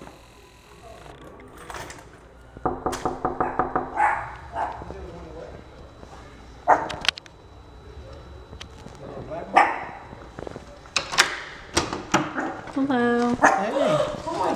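A dog barking: a quick run of barks about three seconds in, more barks and yips later, and sharp knocks in between.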